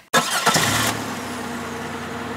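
A car engine starting: a loud burst as it catches, then settling within a second into a steady idle.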